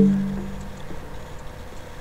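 A single note on the electric guitar's string, plucked once and ringing out, fading away within about a second.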